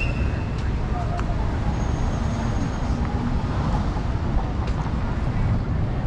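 City street ambience at a busy intersection: a steady low traffic rumble from passing cars, with indistinct chatter from people nearby and a few short clicks.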